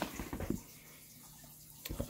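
A few light knocks and rustles as a plastic storage drawer is handled, then quiet with a faint steady low hum, and a single click just before the end.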